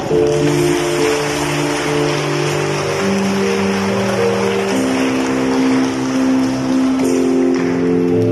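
Electronic keyboard playing slow, held chords, changing to a new chord about every two to three seconds, as an instrumental passage between sung parts of a hymn.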